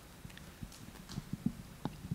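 A few faint, irregular clicks and soft taps from a laptop being operated, over quiet room tone.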